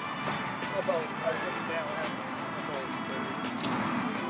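Faint, indistinct talk with soft background music underneath, and a brief sharp click near the end.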